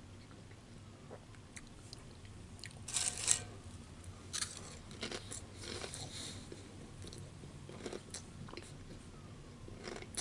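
Close-up chewing of food, with wet mouth clicks and smacks. The loudest burst of chewing comes about three seconds in, followed by scattered smaller clicks.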